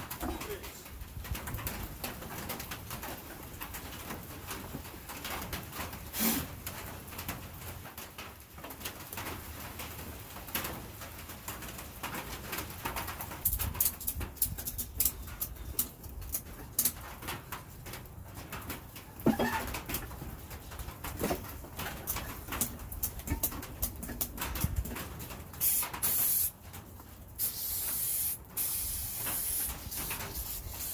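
A ratchet strap being cinched around a car tire's tread, clicking irregularly for several seconds in the middle, squeezing the tread so the beads spread out toward the rim. Near the end come two bursts of aerosol spray hissing, as a flammable spray is put into the gap between the tire bead and the rim so it can be lit to seat the bead.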